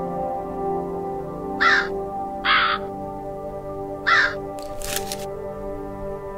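A bird cawing three times, each call short and harsh, over soft background music.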